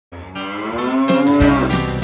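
A cow mooing once, a long call that rises slightly and then falls away, with music starting up under it about halfway through.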